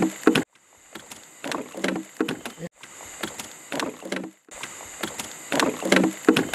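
Knocks and clatter on the hull of a wooden dugout canoe as a fishing line is hauled in by hand, over a steady high insect drone. The sound cuts out abruptly a few times.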